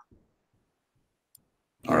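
Near silence during a pause in the conversation, broken by one faint click, then a man's voice starts speaking near the end.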